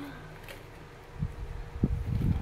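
Scissors cutting into a cardboard box while the box is handled: quiet at first, then low scraping and rumbling about a second in, with a sharp knock near the end.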